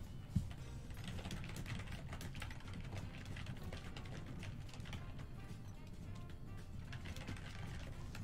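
Online slot game audio: background music with a run of quick clicking sound effects as the reels spin and symbols drop, plus one sharp thump just after the start.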